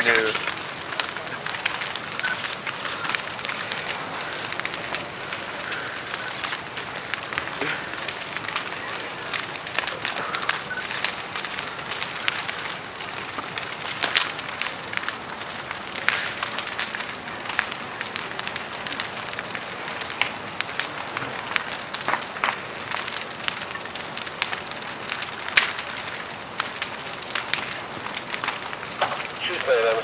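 A fully involved wood-frame house fire crackling and popping: a steady rushing noise dotted with sharp snaps, the loudest pops about halfway through and near the end.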